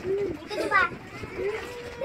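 Voices of children and adults in short calls and chatter, with a single voice beginning a long, steady hum near the end.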